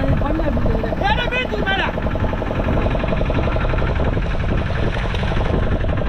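A boat engine running steadily at idle, a low rumble with a fast even pulse. A man's voice calls out briefly about a second in.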